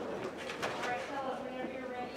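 Indistinct chatter of many voices in an auditorium, with a few faint knocks.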